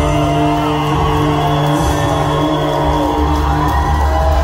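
Live band playing an instrumental passage: long held notes that slide up and down over a steady low drone and bass, heard from the audience in a large hall.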